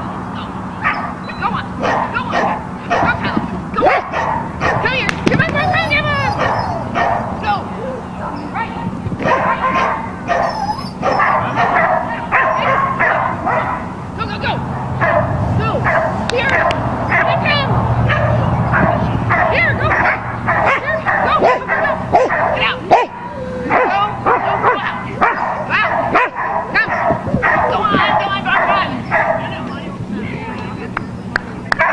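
Dogs barking and yipping over and over in quick, short calls, with high whines now and then.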